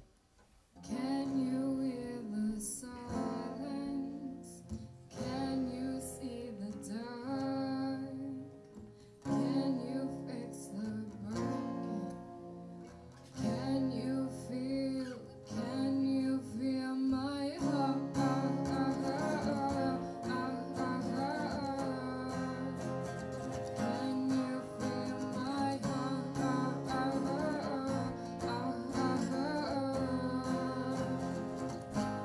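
Acoustic guitars playing live, strummed and picked chords starting about a second in, with short breaks near 9 and 13 seconds.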